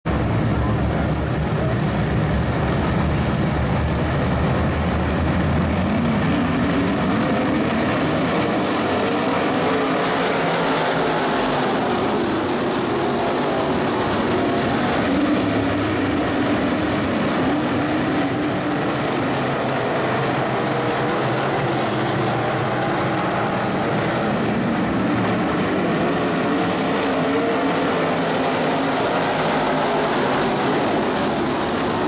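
A field of IMCA Modified dirt-track race cars racing as a pack, their V8 engines blending into a loud, continuous drone whose pitch rises and falls as cars pass.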